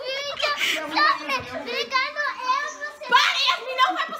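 Excited, high-pitched young girls' voices talking over one another and squealing, with no clear words.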